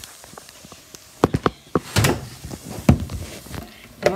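Handling noise as the phone filming is picked up, carried and set down in a new spot: a series of sharp knocks and thunks, the loudest about two seconds in.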